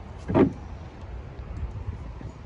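A dog's long claws scraping once across wooden deck boards as it paws, a short scrape about half a second in, followed by a few faint ticks.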